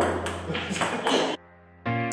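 Background music with a steady beat. It drops away suddenly about a second and a half in, leaving a faint held chord for about half a second.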